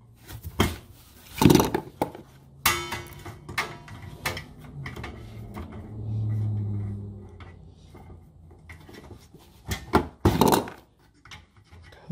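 Hand tools working the wires of an electric baseboard heater: pliers and a wire stripper click and knock against the wires and the steel housing, with brief scraping, in several separate strokes.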